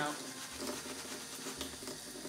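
Kitchen tap running steadily into a sink, with wet, soapy fabric AirPods Max ear-cushion covers being scrubbed against each other by hand under it.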